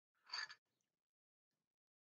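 A single short slurping sip of hot tea from a ceramic mug, about a quarter of a second in.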